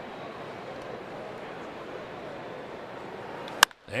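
Steady low background noise of a ballpark crowd, then a single sharp crack of a bat hitting the pitch near the end.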